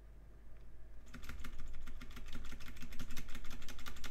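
Computer keyboard keys clicking rapidly and evenly, starting about a second in: keystrokes poured into a locked U-Boot console to try a buffer overflow.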